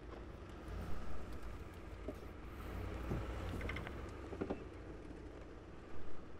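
Low, steady engine rumble from a Ford SUV moving slowly while it takes up the slack on a tow strap hooked to a car in a ditch, with a few faint knocks and clicks.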